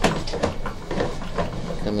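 Sewer inspection camera's push cable being pulled back out of the pipe: scattered sharp clicks and knocks over a steady low hum.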